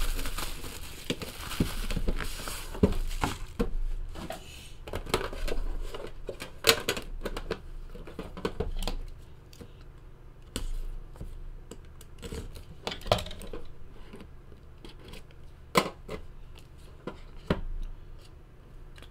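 Plastic shrink-wrap being torn and crinkled off a trading-card hobby box for the first three or four seconds. After that come scattered taps and scrapes as the box is handled and its lid opened.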